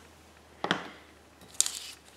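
A light tap less than a second in, then a short, crisp rustle as a strip of old book-page paper is lifted off the desk.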